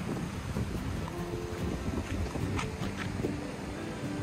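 Wind buffeting the microphone, a gusty low rumble.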